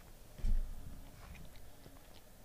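A dull low thump about half a second in, then faint small clicks and handling noise of hands at a desk.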